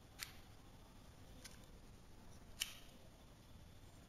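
Wooden bars of a Kongming burr-lock puzzle clicking against each other as they are pressed into place: three short clicks, the one near the end the loudest.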